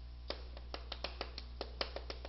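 Chalk tapping and scratching on a chalkboard during handwriting: a quick, irregular run of light clicks over a low steady hum.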